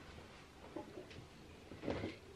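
Faint rustling of a towel and wet hair being handled, with a short, louder soft noise near the end.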